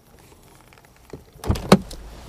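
Quiet car cabin, then about a second and a half in, rustling and handling noise with one sharp loud click as someone shifts to get out of a car's back seat.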